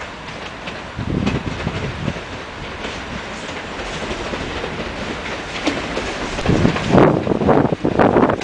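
Czech Railways class 680 Pendolino electric trainset pulling out at low speed, its wheels clattering over points and rail joints. The sound grows louder as the train draws level, ending in a quick run of loud knocks as the bogies pass close.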